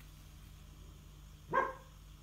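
A single short, bark-like animal call about a second and a half in, over a faint steady low hum.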